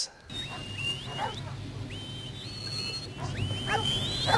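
Sheepdog-trial recording played through loudspeakers: a shepherd's whistled commands, a series of high whistles that each rise quickly and then hold, with a few short lower calls between them. A steady low hum runs underneath.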